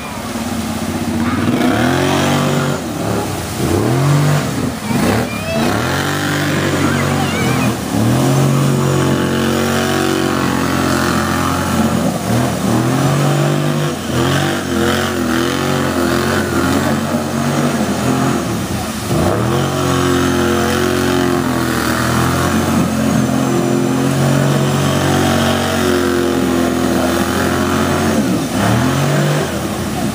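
Kawasaki Brute Force ATV engine revving up and down over and over as it drives through a creek, with water splashing and spraying off the tyres.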